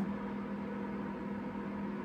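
A steady low hum with a faint hiss running evenly, with no distinct event: background room tone from a constant electrical or fan-like source.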